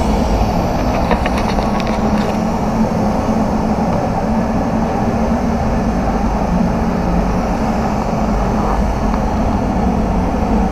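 Steady rumble of a paint spray booth's air-handling fans running, with a few light clicks about a second in.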